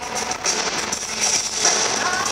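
Live band music from a concert PA, an instrumental stretch between sung lines of a pop song, picked up from the audience.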